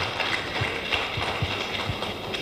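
Scattered applause: a room of people clapping, with uneven individual claps.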